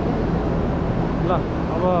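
Steady droning din of a livestock market shed, a hum under general noise, with a voice breaking in near the end.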